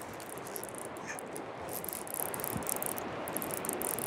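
Fly reel's click-pawl ratcheting in a fast run of clicks as the line is reeled in, over the steady rush of river rapids.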